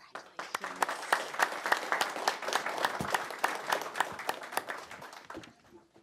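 Applause from a small audience of board members and attendees in a meeting room, many hands clapping. It starts right away, holds for about five seconds and dies out near the end.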